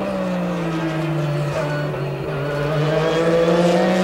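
Onboard sound of a Porsche 911 GT3-RS race car's flat-six engine running hard at high revs. The note sags about a second in and climbs again near the end as the revs come back up.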